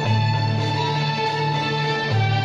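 Andalusian music ensemble of bowed and plucked strings (violins, cello, lutes and mandolins) playing together, over a long-held low bass note that shifts at the start and the end.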